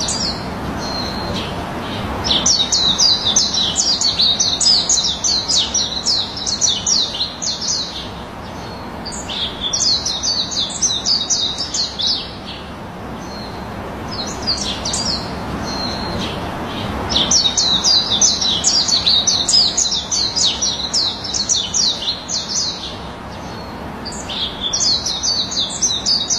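A songbird singing in repeated bouts of rapid, high notes, each a quick downward sweep, about five a second, with each bout lasting a few seconds and coming back four times. A steady hiss sits underneath.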